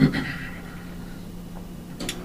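A man's short throaty vocal sound right at the start, falling in pitch and fading within half a second, then a steady low electrical hum.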